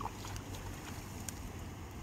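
A hooked tilapia splashes briefly at the water's surface near the start, over a steady low rumble of wind on the microphone.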